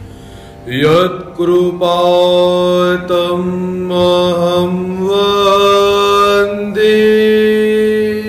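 A man singing a devotional chant into a microphone in long, held melodic notes. His voice slides up into the first note about a second in, and he holds each note for a second or more.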